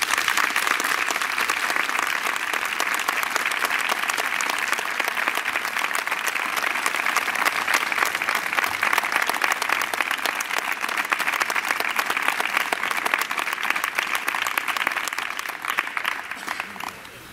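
A crowd of several dozen people clapping steadily by hand in sustained applause.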